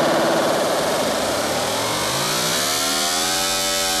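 Electronic dance music: a loud, buzzy, engine-like synth tone whose pitch glides down and then swells up and back down in a slow arch.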